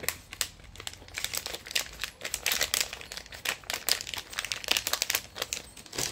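Small clear plastic bag crinkling and crackling, many quick irregular crackles, as a watch band is pushed into it and the bag is handled.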